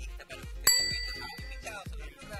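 Background music with a steady beat, and about two-thirds of a second in a single bright bell ding that rings out and fades over about a second: the notification-bell sound effect of a subscribe-button overlay.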